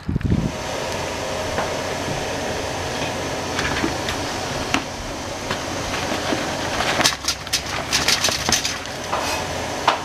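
Enamel stockpot of water at a hard boil on an electric stove, a steady rushing hiss. In the last few seconds, clattering knocks as a container is tipped into the pot and the lid goes on.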